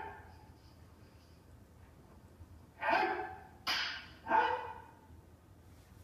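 Three short, sharp kiai shouts from jodo practitioners performing a kata, one about three seconds in and two more in quick succession after it.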